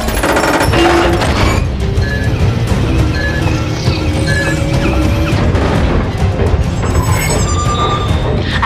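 Action-film soundtrack: a dramatic music score over heavy booms and crashes from a giant robot on the move, loudest in the first second and a half. Three short high beeps sound about a second apart in the middle.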